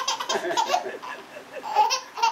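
Baby laughing: a run of quick, high-pitched laughs through the first second, then another short burst near the end.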